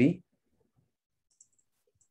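A man's word of speech, then near silence broken by one faint click about a second and a half in.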